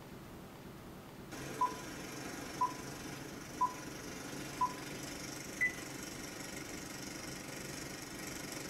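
Film countdown leader beeps over a steady hiss: four short beeps a second apart, then a fifth, higher beep.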